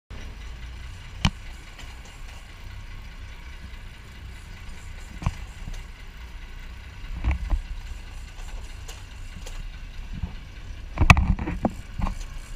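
Steady low rumble of a sport-fishing boat at sea, engine and wind on the deck, with a few sharp knocks and a louder cluster of knocks near the end.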